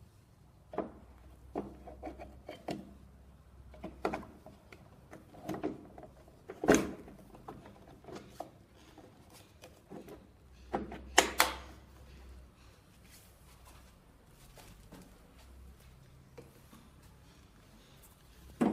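Plastic knocks, rubs and clicks as the IPL handpiece's plastic connector plug is handled and pushed into its socket on the machine. The loudest knocks come about seven and eleven seconds in.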